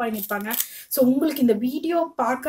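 A woman talking: only speech.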